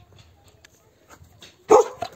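A single bark from a border collie near the end, after a quiet stretch.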